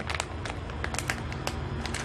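Light crackles of a plastic instant-ramen packet being handled, over faint background music.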